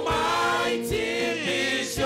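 Live gospel praise singing: a male lead voice with backing singers, over sustained electronic keyboard chords and a steady beat.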